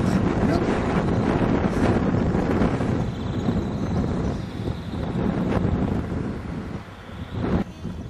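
Wind buffeting the camera microphone, a rough rumbling noise that eases near the end.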